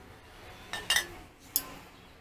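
Glass soda bottles clinking against each other as they are moved by hand: two sharp clinks about a second in, less than a second apart.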